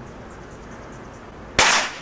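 Air rifle firing a single shot about one and a half seconds in: a sharp crack that dies away within a fraction of a second.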